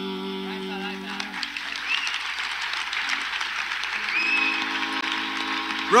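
A sustained harmonium drone fades out about a second in, and the audience applauds, with a few voices calling out. A low drone sounds again near the end.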